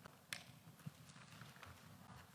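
Near silence with a few faint taps and clicks as a Bible is handled on a clear acrylic pulpit.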